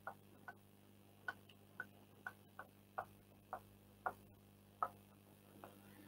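Stylus tip tapping on an interactive writing screen while a formula is handwritten: about a dozen faint, short ticks at irregular intervals of roughly half a second, over a faint low hum.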